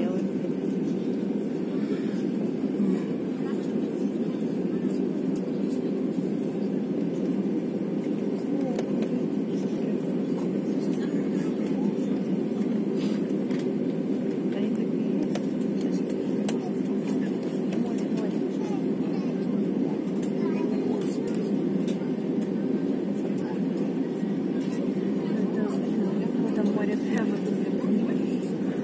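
Steady cabin noise of an Airbus A320-family airliner taxiing, heard from inside the cabin: the even hum of the jet engines at low taxi thrust, holding level without rising.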